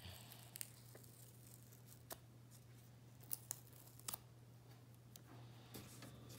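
Faint, sharp little clicks and crackles, about half a dozen scattered through near silence, as the paper backing is peeled off a small foam sticker.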